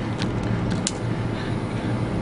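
Steady low rumble of outdoor background noise, with two short faint clicks in the first second.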